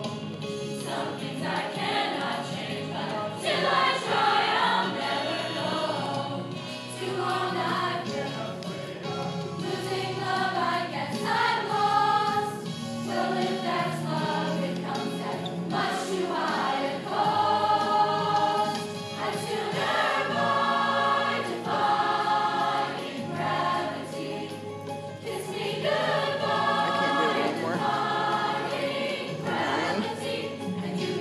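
Mixed choir of male and female voices singing in sustained chords, the sound swelling and easing from phrase to phrase.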